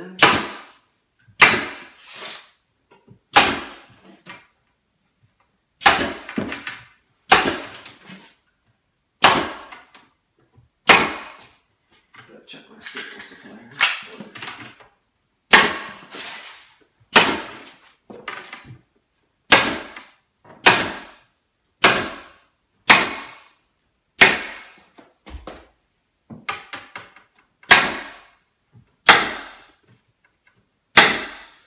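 Pneumatic staple gun driving staples through denim insulation into a wooden panel frame, firing roughly once a second, sometimes two shots in quick succession, each a sharp pop with a short ring.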